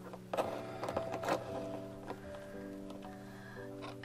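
Soft background music of held, chord-like notes, with a few light clicks and taps as small metal paint tubes are handled and set down on a table, most of them within the first second and a half.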